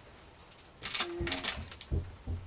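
Rustling handling noise from craft materials, in two short crackly bursts about a second in, with a soft low bump near the end.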